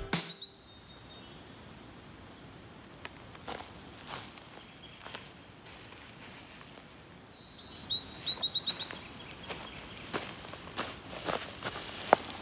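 Quiet outdoor dawn ambience with a faint steady hiss. A bird gives a quick run of short high chirps about eight seconds in, and footsteps crunch on frosty grass near the end.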